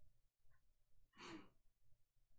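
Near silence, broken about a second in by one faint, short breathy exhale through the nose or mouth, like a quiet laughing breath or sigh.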